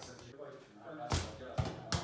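A light toy ball kicked and bouncing on a tiled floor: a few sharp knocks, the loudest about a second in and just before the end.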